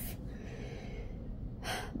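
A crying woman's breathing between words: a soft breath out, then a sharp in-breath near the end.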